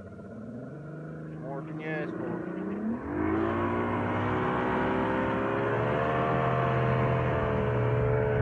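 Mercury XR2 150 two-stroke V6 outboard doing a hole shot: the engine note climbs steeply about three seconds in as the throttle opens and the boat accelerates, then holds at a steady high speed with a slight further rise.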